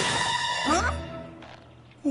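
Cartoon soundtrack: a music cue ends about half a second in, then a short wavering cry rises and falls about a second in, and the sound fades away.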